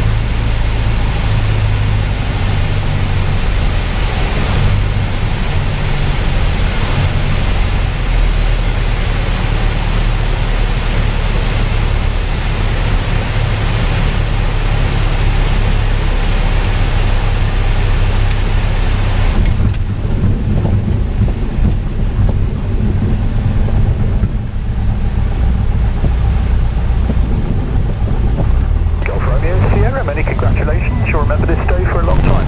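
Cabin noise of a Piper PA-28 single-engine light aircraft landing: a steady engine drone and rush of air. About two-thirds through the rush of air drops away as the aircraft slows on the runway, leaving the lower engine hum; a radio voice starts near the end.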